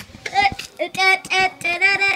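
A child singing a short phrase in a high voice: a run of separate sung syllables on steady held notes.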